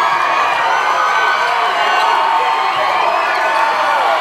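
A large crowd cheering and shouting together in a gymnasium, many voices at once, loud and steady, celebrating a championship win.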